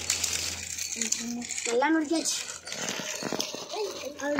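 A child's voice speaking in short bursts over a steady background hiss.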